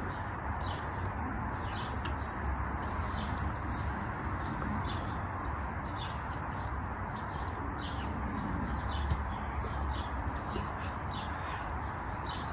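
Small birds chirping repeatedly, short high calls every second or so, over a steady outdoor background hiss and low rumble.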